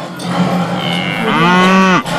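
A cow mooing: one call in the second half that rises and falls in pitch and cuts off abruptly, over a steady low hum.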